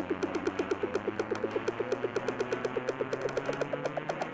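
Electronic dance music played from Traktor Remix Decks: a short note repeating about eight times a second and climbing steadily in pitch, over fast high ticks like hi-hats, with no deep bass, like a rising build-up.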